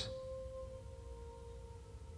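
Faint background music: a few steady held tones forming a quiet drone.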